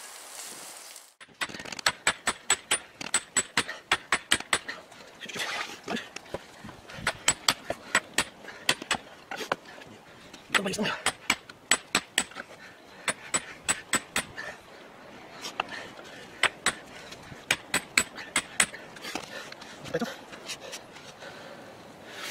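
A sledgehammer head being driven onto its wooden handle with blows from a second hammer: sharp metal-on-metal strikes in quick runs of several, about three to four a second, with short pauses between runs.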